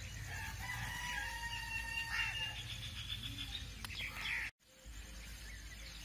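A rooster crowing faintly: one long held call of about two seconds over a low steady background hum, with the sound dropping out for a moment near the end.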